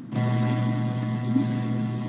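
A steady electrical hum on the call's audio line, with a stack of even tones over a low drone, that switches on abruptly just after the start.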